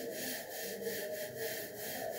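A cloth rubbed back and forth across a chalkboard, wiping off chalk writing, in quick even strokes of about three or four a second.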